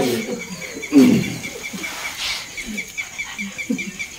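A short vocal sound about a second in, then a few soft low sounds. Under it runs the steady fast chirping of an insect, about six chirps a second.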